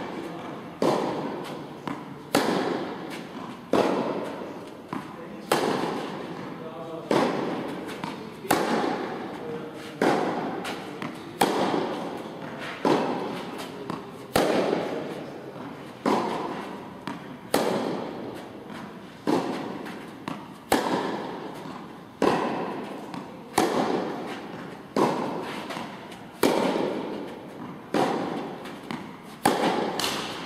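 Tennis balls struck with a racquet again and again, a sharp hit about every one and a half seconds, each echoing on in a large indoor tennis hall.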